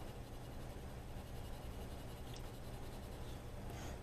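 Colored pencil scratching softly on paper as it shades in a drawing, faint over a steady low hum.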